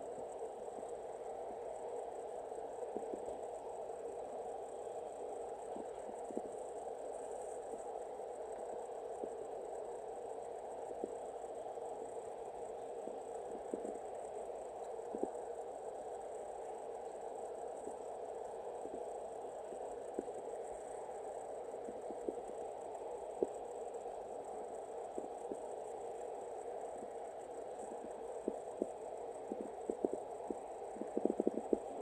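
Cat purring steadily, with soft clicks of tongue on fur from grooming that come more often near the end.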